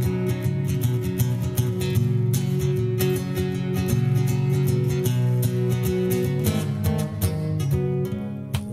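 Solo acoustic guitar playing an instrumental introduction, chords struck in a steady rhythm with no voice yet.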